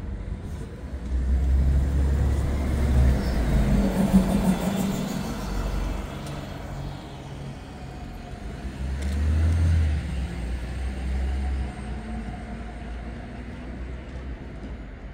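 Low engine rumble of a city bus pulling away from its stop, with street traffic noise. The rumble swells twice: from about a second in to about four seconds, and again around nine to eleven seconds.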